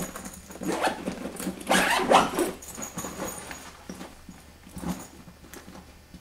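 A suitcase being handled and packed: a series of knocks and rustling, with a louder rough noise about two seconds in.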